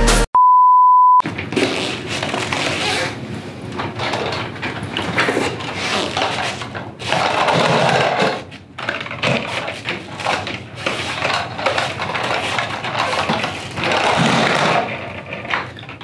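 A single steady high-pitched beep lasting about a second, then a long stretch of rustling and clattering as papers, folders and small objects are shuffled and set down on a desk.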